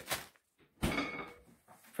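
A single thump a little under a second in, followed by brief rustling that dies away within half a second: kitchen handling noise.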